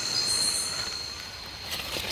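Night-time rainforest insect chorus: steady high-pitched singing of crickets over a faint hiss, with a few soft rustling clicks near the end.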